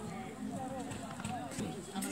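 Indistinct chatter of nearby spectators' voices, with a couple of faint knocks partway through.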